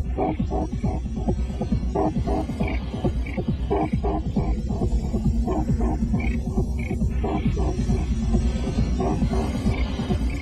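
Dense experimental electronic soundtrack: a deep throbbing drone with fast ticking strokes and short repeated pitched blips above it.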